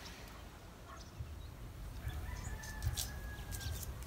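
Faint rooster crowing: one long drawn-out call starting about two seconds in, over a low rumble.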